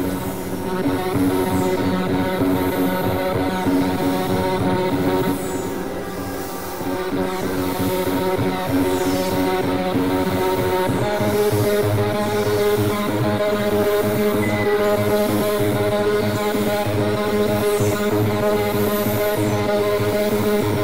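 Electronic synthesizer drone music: layered sustained tones that move to a new chord about eleven seconds in, after which the low notes pulse rapidly.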